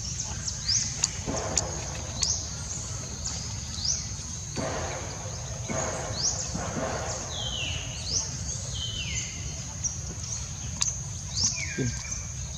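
Repeated short, high rising bird chirps, about one or two a second, with a few lower falling calls, over a steady high insect drone and a low background rumble.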